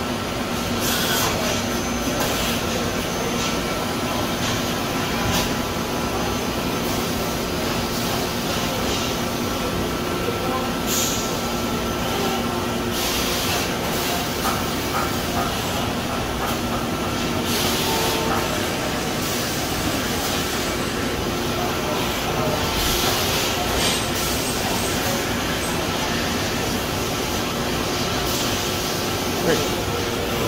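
Brother TC-22B drilling and tapping center running: a steady mechanical hum with a few held tones, broken now and then by short bursts of hissing.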